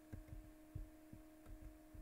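Near silence: a steady faint low hum, with about six soft, very low thumps scattered through it.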